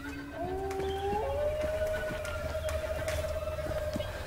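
Eerie held tones: a low note gives way, about half a second in, to two slightly rising notes, then to a single steady higher note held for the rest, over a low rumble.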